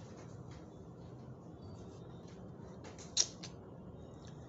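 Low steady room hum with a few faint clicks, and one sharper click about three seconds in.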